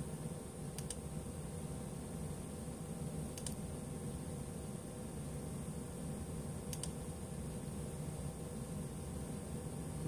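Three faint, isolated computer keyboard key clicks a few seconds apart, over a steady low room hum.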